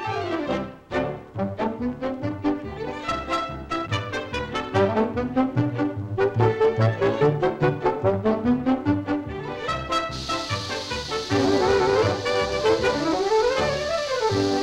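Brass-led orchestral cartoon score playing a run of quick, short notes with a few rising glides. From about ten seconds in, a steady hiss joins the music.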